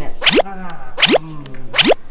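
Cartoon 'boing' sound effect added in editing: three quick springy pitch rises, about three quarters of a second apart.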